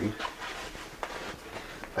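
Canvas sprayhood fabric rustling as it is handled on its stainless steel frame, with a few faint knocks.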